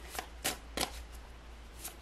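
A tarot deck being shuffled by hand, the cards sliding and snapping against each other in about half a dozen quiet, irregularly spaced flicks.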